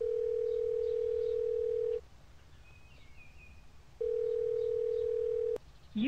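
Telephone ringback tone heard through a phone's earpiece: two steady rings of about two seconds with a two-second gap, the second cut short by a click as the call goes through to voicemail.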